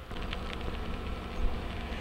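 Outdoor background noise: a steady low rumble with a faint hiss and a few faint ticks.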